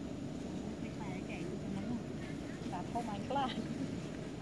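A few short voiced sounds, speech-like, about a second in and again near the end, over a steady low rumble.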